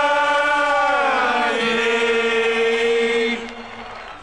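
A singer and choir holding the long final sung note of a Flemish carnival football supporters' song. The note slides down to a lower pitch about a second and a half in and is held until it stops about three and a half seconds in.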